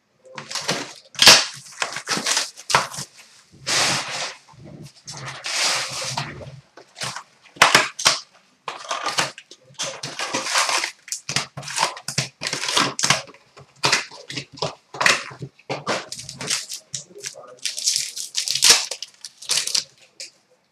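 A cardboard hockey card box being opened and its packs handled and torn open: a long string of short crinkling, rustling and tearing noises of wrappers and cardboard, with small knocks on the glass counter.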